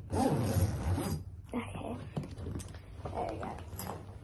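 A suitcase zip being pulled closed: a run of small rapid clicks lasting about two seconds, starting after a few spoken words.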